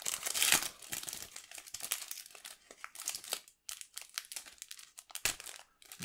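Foil trading-card booster pack crinkling as it is torn open and the cards are pulled out. The crinkling is loudest in the first second and thins to scattered crackles after that.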